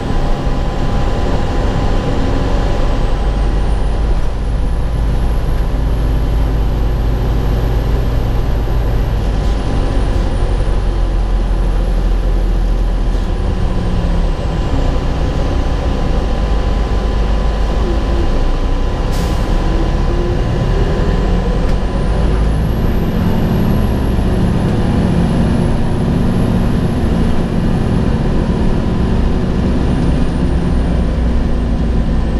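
Interior sound of a 2003 Gillig Phantom transit bus under way: a steady low diesel engine rumble with a high whine that rises as the bus pulls away, holds, falls away around the middle, and rises again near the three-quarter mark. A short hiss of air cuts in about two-thirds of the way through.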